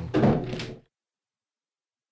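A man's voice reading the radio news, its last words cut off abruptly less than a second in, followed by dead digital silence.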